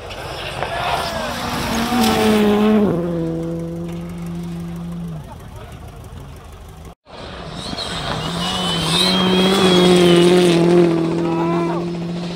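Rally cars on a gravel special stage: an engine revving hard, its pitch climbing and then dropping suddenly about three seconds in. After a cut about seven seconds in, a second car's engine note steps up and down with gear changes as it passes.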